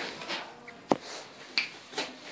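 Two sharp snaps about two-thirds of a second apart, the first the louder.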